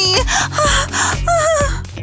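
A young woman gasping and whimpering in fright, in short breathy cries, over steady background music.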